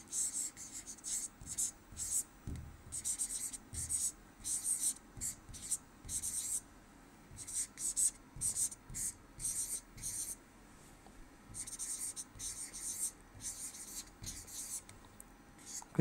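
Felt-tip marker writing on a board: a run of short, scratchy strokes with brief pauses between words.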